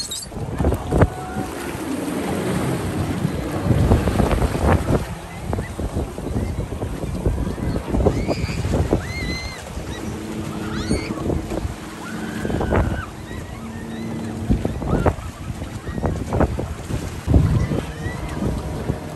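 Small speedboat under way on choppy water: wind buffeting the microphone and water slapping the hull over a Suzuki outboard motor, whose steady hum comes through from about ten seconds in.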